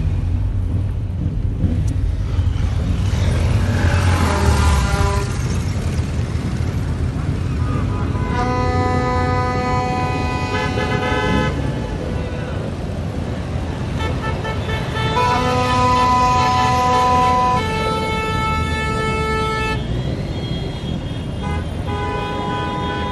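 Vehicle horns honking in long held blasts, several at once at different pitches, over the steady rumble of car and motorcycle engines heard from inside a car. The horns sound for a few seconds at a time, once around the middle and again for several seconds later on.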